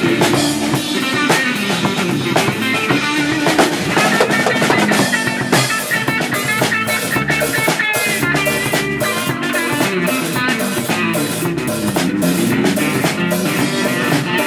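Live band playing an instrumental passage of a blues-rock song: electric guitar lines over a steady drum-kit beat.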